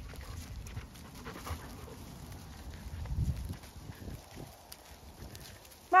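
A small dog panting close by, with soft footsteps on grass and a low rumble that swells about three seconds in.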